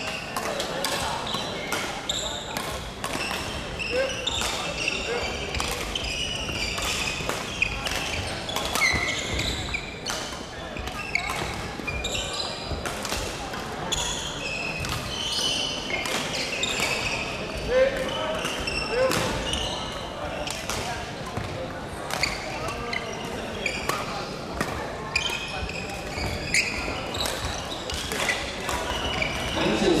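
Badminton hall during play: rackets strike shuttlecocks in frequent, irregular sharp cracks from several courts, with short high squeaks of court shoes on the wooden floor. Players' and spectators' voices murmur throughout, echoing in the large hall.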